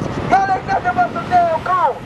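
Speech only: a man shouting his words through a handheld microphone and portable megaphone.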